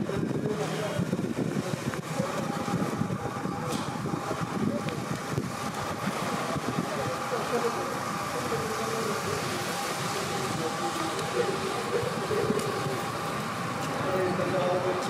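City street ambience: indistinct voices of passersby over a steady wash of traffic noise.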